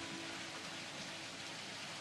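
A steady, even hiss of background noise with a faint low held tone underneath.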